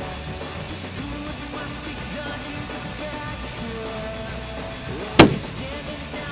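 Background music playing steadily, with one loud rifle shot from an extreme-long-range rifle about five seconds in.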